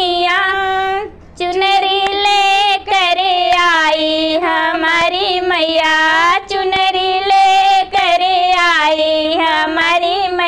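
Women singing a Hindi devotional bhajan to Mata Rani (Durga) in a folk Devi geet style, one continuous sung melodic line with held, gliding notes. There is a short break a little after a second in.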